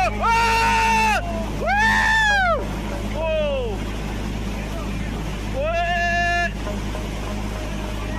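High-pitched screaming cries of alarm, four of them, each rising and falling in pitch, over a steady low rumble.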